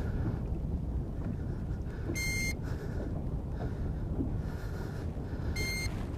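Two short electronic beeps from a handheld digital fish scale, about three and a half seconds apart, as the scale weighs a big largemouth bass hanging from it; steady low wind noise underneath.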